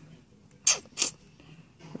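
Two short crackles about a third of a second apart, from a paper product card and a plastic sheet-mask packet being handled.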